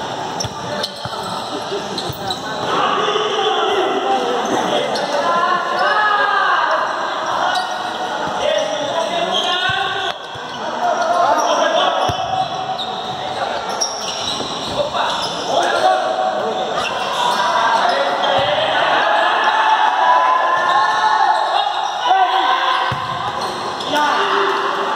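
Futsal ball being kicked and bouncing on a hard indoor court, a few scattered sharp knocks in a large hall, under steady shouting from players and onlookers.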